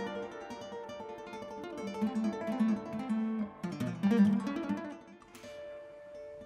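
Solo acoustic guitar playing a plucked, quick-moving melody over a bass line, the notes ringing together. The playing thins out to a single held note near the end.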